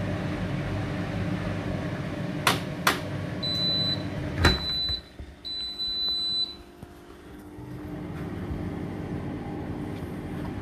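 Hotpoint front-loading washing machine at the end of its cycle: a steady hum, then two sharp clicks, short high electronic beeps, and a loud knock as the door is pulled open, after which the hum drops away.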